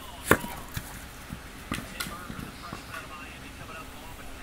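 A sharp thump about a third of a second in, then several lighter, irregular knocks and taps.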